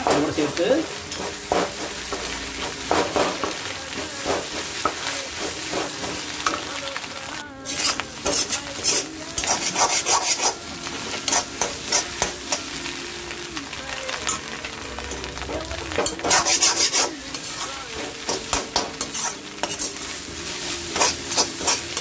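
Egg podimas sizzling in a frying pan while a flat metal spatula scrapes and stirs it against the pan in quick irregular strokes. The scraping gets busier about nine seconds in and again around sixteen seconds.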